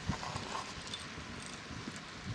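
Wind buffeting an outdoor microphone: irregular low thumps over a steady hiss, the strongest just after the start.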